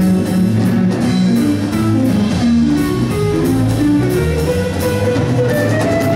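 Live blues band: a guitar plays a single-note melodic line over bass guitar and drums with steady cymbal strokes, the line climbing in pitch near the end.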